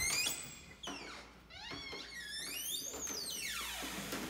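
Door hinge squeaking as a wooden door is swung open: a wavering creak whose pitch slides up and down, ending in a long downward slide.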